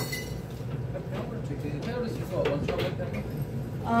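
Low murmur of voices with occasional light clinks of glassware.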